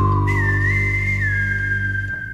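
Music intro: a single whistled melody line that slides slowly downward, leaps up with a small wobble, holds, then steps down. It plays over a sustained low chord that fades near the end.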